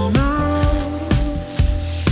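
A shower head spraying water, a steady hiss, under background pop music with a steady beat.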